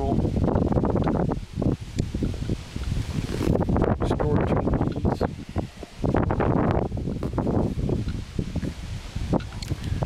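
Wind buffeting the microphone in uneven gusts, a loud low rumble that rises and falls.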